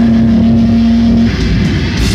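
Live heavy metal band: a single low note is held steadily for about a second with the drums and cymbals dropped back, then the full band's dense distorted sound comes back in.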